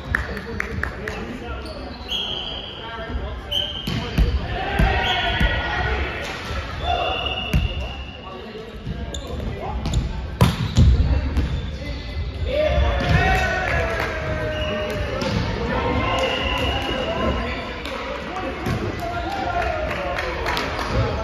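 Indoor volleyball play on a hardwood court: repeated ball hits and bounces, with one sharp hit about ten seconds in, short sneaker squeaks, and players' shouted calls, all ringing in a large hall.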